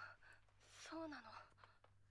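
Near silence with one short, soft human vocal sound about a second in, breathy at first and then falling in pitch, like a sigh or a quietly spoken word.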